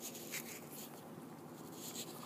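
Faint rustling and scratching over low, steady room noise.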